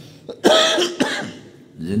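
A man coughs once, briefly, about half a second in, between phrases of a spoken lecture.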